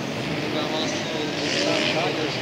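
Spectators chatting, with the steady, distant buzz of motocross bike engines behind them.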